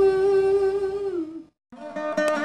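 Vina playing a tanam phrase in raga Mayamalavagaula. A single note is held for about a second, then slides down and fades, and breaks off briefly to silence before fresh plucked notes start near the end.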